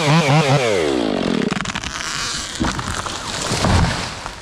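Stihl 500i chainsaw wavering at high revs, then winding down with a falling pitch as the cut ends. The felled walnut tree then comes down through its limbs with snapping and crackling, and its forks hit the ground in heavy thuds near the end.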